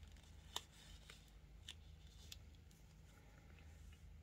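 Near silence with a low steady hum and a few faint small clicks, the clearest about half a second in, as fingers handle a tiny plastic scale-model wheel and its pin.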